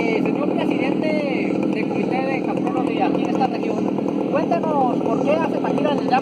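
Voices talking over a steady low rumble of background noise.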